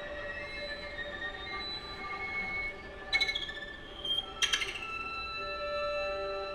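String quartet of two violins, viola and cello playing contemporary music: several held high bowed tones layered together. Two sudden sharp accents cut in about three seconds and four and a half seconds in, the first followed by a falling tone.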